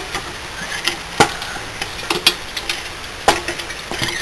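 A few sharp clicks and knocks, the three loudest about a second apart, over a steady background hiss.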